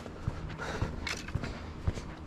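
Footsteps on a concrete walkway, a steady walking rhythm of short, even footfalls.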